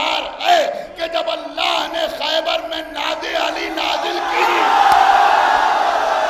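A man's voice calls out loudly with rising and falling pitch, then about four seconds in a large crowd of men answers with a long, loud shout in unison: a congregation chanting a religious slogan (naara).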